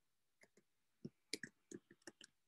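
Faint computer keyboard keystrokes as a few keys are typed: a couple of short clicks, then a quicker run of about five more in the second half.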